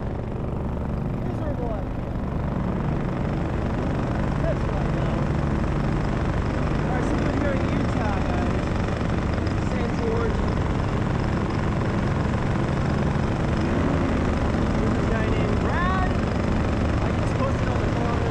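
Paramotor's Minari 180 single-cylinder two-stroke engine and propeller running steadily in flight.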